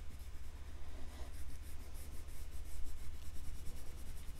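Green oil pastel scribbling on drawing paper in rapid short strokes, a soft scratchy rubbing as it fills in the edge of a drawn leaf.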